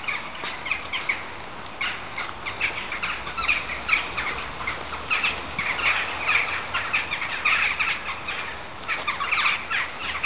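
A flock of sparrows chirping together: a continuous chatter of many overlapping short chirps.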